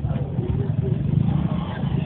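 Roadside noise: a steady low rumble of traffic and engines, with people's voices talking faintly in the crowd.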